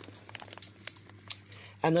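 A plastic snack bag of chickpea puffs crinkling faintly as it is handled, with a few sharp crackles.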